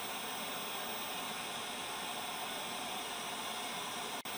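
Steady TV-static hiss, a white-noise sound effect, starting suddenly and holding at an even level.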